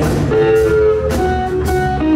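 Live blues-rock band playing: electric guitar over bass, drums and organ, with held and bent guitar notes.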